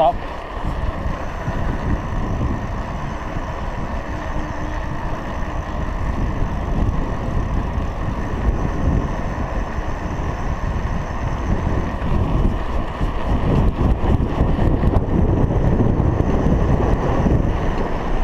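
Wind noise buffeting a GoPro Hero 3's microphone, mixed with tyre hum from a road bicycle rolling on tarmac at speed. It is a steady low rush that grows louder in the last third.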